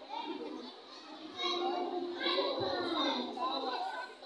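A crowd of young children chattering and calling out, many voices overlapping, growing louder about a second and a half in.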